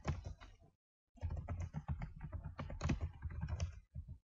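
Computer keyboard typing: rapid runs of keystrokes, with a short pause about a second in.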